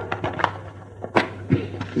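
A pen scratching and tapping on a sheet of paper as a short table is written out, with a few sharp ticks among the scratching.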